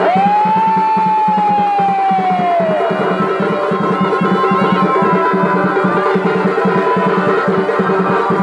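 Live Chhau dance accompaniment: fast, driving drumming, with a wind instrument holding one long high note for about three seconds that sags slightly in pitch and fades out, then the melody carries on over the drums.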